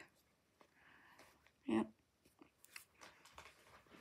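Faint handling noise: a few light clicks and rustles, with a single spoken 'yep' about one and a half seconds in.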